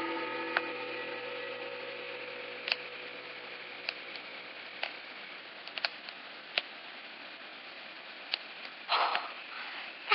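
A gong ringing after being struck: several steady tones at once, fading slowly and dying away about five seconds in. A few faint clicks follow, then a short hiss near the end.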